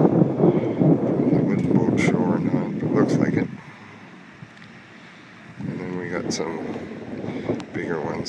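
Wind buffeting the microphone in gusts, a rough rumbling rush that drops away for about two seconds in the middle and then picks up again.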